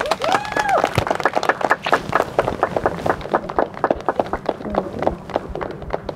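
Wedding guests applauding, with a cheer from one voice rising and falling in a long 'woo' near the start; the clapping is densest early on and thins out toward the end.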